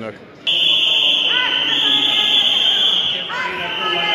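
A loud, shrill, steady alarm-like tone starts suddenly about half a second in and holds without a break, over men's voices in a large hall.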